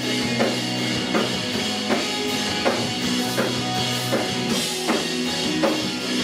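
Live rock band playing an instrumental passage, heard through the room: electric guitars and bass holding chords over a drum-kit beat, with a strong drum hit about every three-quarters of a second.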